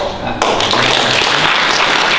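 Audience applauding: many hands clapping together, breaking out about half a second in.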